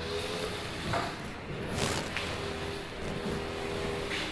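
Lecture-room background with a steady low hum and a few faint, brief noises about one and two seconds in.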